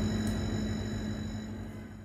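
Steady low hum of room tone with a faint high whine, fading away over the two seconds.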